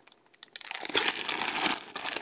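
Clear plastic bag around a football jersey crinkling as hands handle it: a few faint crackles, then dense rapid crinkling from about half a second in.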